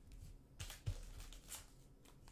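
Faint handling of a trading card as it is turned over in the fingers: a few soft clicks and rustles between about half a second and a second and a half in.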